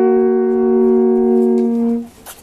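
Two alphorns playing a long held chord together, two steady notes in harmony. One horn drops out shortly before the end, and the other stops right at the end.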